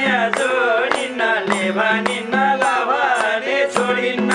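Nepali dohori folk song: sung vocals over a held harmonium drone, with a madal drum beating a steady rhythm of about three strokes a second.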